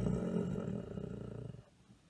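A low, rough growl lasting about a second and a half, the growling noise of the story's custard.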